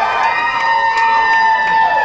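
Audience cheering: several voices holding long high whoops, with scattered claps, the whoops fading out near the end.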